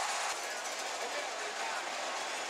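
Stadium crowd noise at a football game: a steady, dense wash of many voices.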